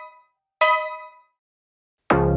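Electronic countdown chime of a workout interval timer: the fading tail of one bell-like ding, then one more about half a second in that rings out and dies away within a second, counting down the last seconds of an exercise set.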